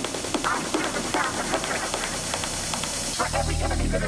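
Hard techno DJ mix dropping into a breakdown: the kick drum stops at the start, leaving quick hi-hat ticks, short mid-range synth or vocal stabs and a high hiss. About three seconds in, a deep sustained bass comes in.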